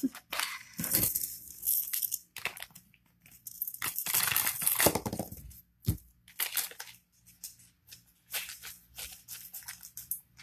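Bags of buttons being handled, rustling and crinkling in irregular bursts, with a longer stretch of rustling around the middle and one sharp click a little later.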